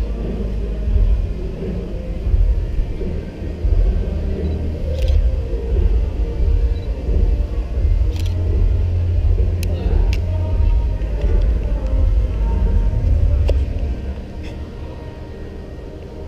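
Low, fluctuating rumble on a walking GoPro's microphone, with people chatting around it and a few sharp clicks. The rumble eases off near the end.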